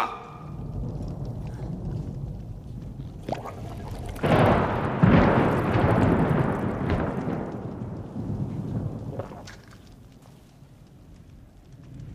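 Rolling thunder: a low rumble that swells sharply about four seconds in, stays loud for about three seconds, then dies away by about nine seconds.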